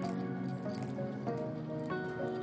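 Gentle instrumental background music with sustained melodic notes. Near the start, faint light clicks as lumps of rock sugar drop into a granite mortar.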